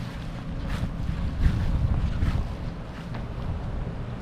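Wind buffeting a handheld phone's microphone outdoors, a fluctuating low rumble, with faint footsteps about one every second underneath as the person filming walks.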